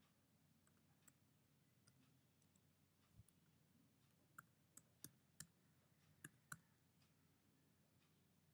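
Faint computer keyboard keystrokes. A few scattered clicks come first, then a quick run of about six sharper clicks around the middle.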